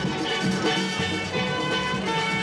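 Caribbean carnival steel band music: steel pans playing a melody over drums with a steady beat.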